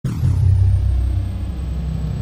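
A deep, steady rumble that starts abruptly, with a faint high sweep falling in pitch over the first half-second: a cinematic intro sound effect under the show's title card.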